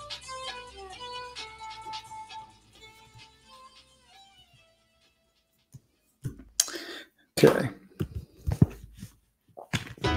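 Background music with a plucked-string melody that fades out about halfway, then a brief silence and a few loud, noisy bursts near the end.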